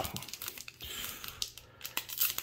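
Foil Digimon Card Game booster pack crinkling and crackling in the hands as it is handled.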